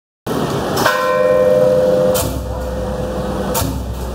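A ringing metal percussion instrument struck three times, about a second and a half apart. The first stroke is the loudest and rings on for about two seconds. Steady street and crowd noise runs under it.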